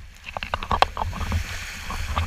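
Spray and water drops from a sailing catamaran's bow wave striking a waterproof action camera's housing just above the surface, heard as irregular sharp ticks and small splashes over a low rumble of wind and water.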